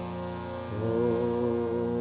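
Steady musical drone of held tones backing a Sanskrit chant, with a louder held tone coming in about three-quarters of a second in.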